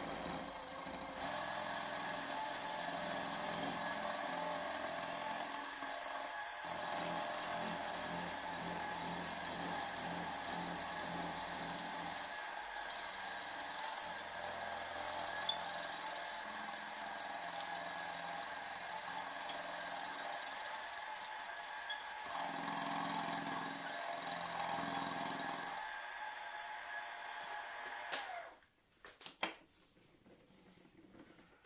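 Bench mill-drill running with an end mill cutting a slot into a steel bar in the machine vice: a steady motor and spindle whine with the noise of the cut. The machine stops about two seconds before the end.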